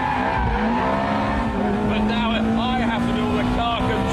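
Ferrari 430 Spider's 4.3-litre V8 at full throttle, revs rising in the first second and then held high, with the tyres squealing as the rear slides out in a drift.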